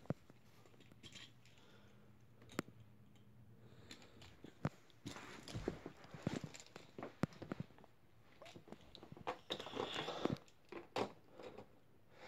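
Handling noise: scattered sharp clicks, taps and rustling as toy cars and the phone are handled. It is quiet at first, with single clicks, and busier in the second half.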